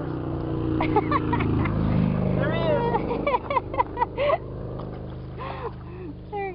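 An engine hum, swelling for about two seconds and then fading away, in the way a passing motor vehicle does. Short voice calls come in as the hum dies down.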